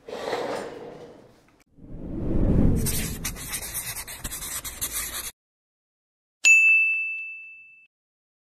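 Logo-animation sound effects: a rushing whoosh that swells about two seconds in and cuts off abruptly a few seconds later, then, after a short silence, a single bright ding that rings out for over a second.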